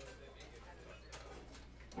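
Quiet room sound of a bar during a pause between songs: faint background voices and a few soft clicks.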